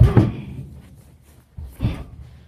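Thuds of a wrestling tackle: a loud thump right at the start as a body hits the carpeted floor, dying away over about half a second, then a second, shorter thump near the end.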